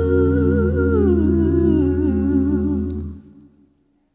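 Male R&B singer holding a low C#2 in a harmonized vocal passage, with higher voice parts sustaining a chord above it. About a second in, the top line wavers and slides down, and the whole chord fades out a little after three seconds.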